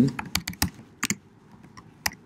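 Typing on a computer keyboard: a quick run of key clicks in the first second, then a few scattered keystrokes.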